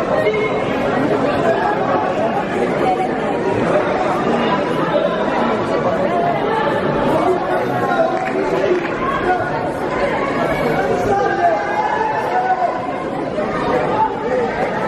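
Overlapping, indistinct chatter of many voices echoing in a large sports hall, steady throughout.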